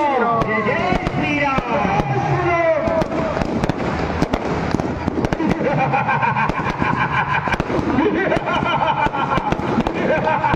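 Fireworks and firecrackers going off in a rapid, continuous string of cracks and pops. Over them a voice with rising and falling pitch is heard in the first three seconds, and a steady held tone comes in from about halfway through.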